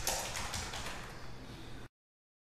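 Computer keyboard keys being tapped, a few quick strokes near the start and then lighter, before all sound cuts off abruptly just before the end.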